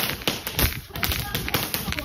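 Fireworks crackling: a rapid, irregular run of sharp pops, several a second.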